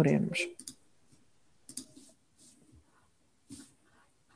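A woman's voice for a moment at the start, then quiet room tone broken by a few soft, short clicks.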